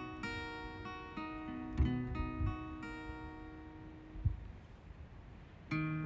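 Solo acoustic guitar playing a song's intro: chords ring out in a series of attacks over the first three seconds and die away after about four seconds in, then a new chord is struck near the end.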